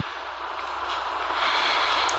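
A steady rushing noise over a low hum, starting with a click and swelling slightly toward the end.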